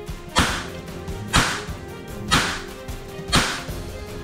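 Toy cap-gun revolver firing caps: four sharp bangs about a second apart, each with a short fading tail.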